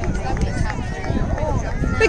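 Spectators chattering in the stands, several voices overlapping with no single one standing out.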